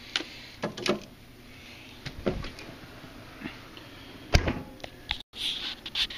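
A few light clicks and knocks of things being handled, with one sharp knock about four seconds in, then a brief cut-out of the sound.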